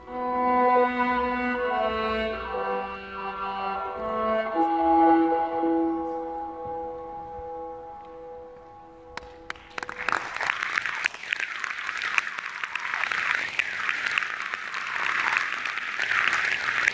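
Slow music of long held notes fades out, and audience applause starts about ten seconds in and carries on steadily.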